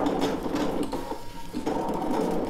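Brother ScanNCut CM350 electronic cutting machine partway through a cut of patterned paper, its motors driving the blade carriage across the mat. The motor sound shifts briefly about a second in.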